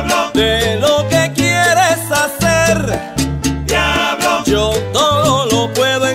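Christian salsa music: steady bass notes, frequent percussion hits and a wavering lead melody above them.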